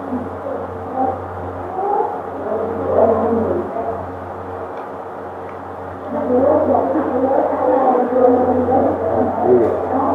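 A Buddhist monk's low, murmured chanting of a blessing incantation, continuous and growing louder about six seconds in, over a steady low hum.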